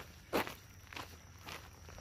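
A hiker's footsteps crunching on a gravel road, a few steady steps at walking pace.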